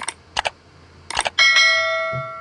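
Subscribe-button sound effect: two pairs of quick mouse clicks, then a bright bell ding about one and a half seconds in that rings on and slowly fades.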